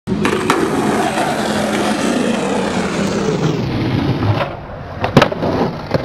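Skateboard wheels rolling on a ramp, a steady rumble that dies down about four and a half seconds in. About five seconds in come a couple of sharp, loud clattering impacts: the board and skater hitting the ramp in a fall that hurts his foot.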